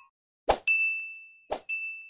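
Subscribe-animation sound effect: a click followed by a bell-like ding, twice, about a second apart, each ding ringing out and fading.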